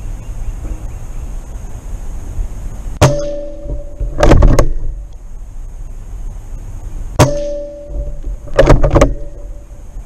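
Benjamin Kratos .25-calibre PCP air rifle fired twice, about four seconds apart, each shot a sharp crack with a brief metallic ring. About a second after each shot comes a quick two- or three-stroke metallic clacking as the action is worked to load the next pellet, over wind rumble on the microphone.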